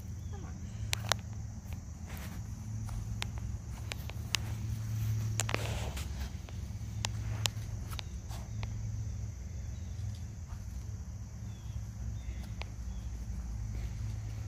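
Soft, irregular footsteps over a low steady outdoor rumble, with scattered short taps.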